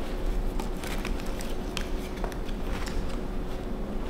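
Faux leather puffer jacket rustling as its hem drawstrings are pulled in, with scattered small clicks from the cord toggles.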